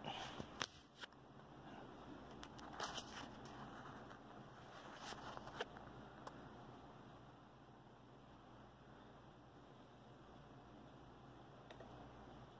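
Faint handling noise: a few light clicks and scrapes of a hex key and the metal Rockit 99 delid tool being moved about on a desk mat, over near silence. The clicks stop about halfway through.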